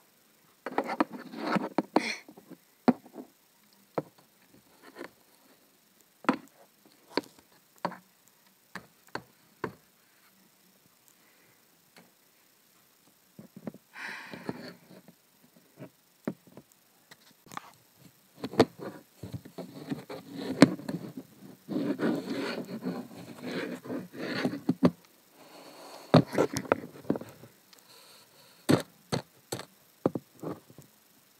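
Hard plastic Schleich animal figures handled by hand on a tabletop: scattered clicks and knocks as they are set down and tapped against the surface, with several longer stretches of rustling and scraping handling noise.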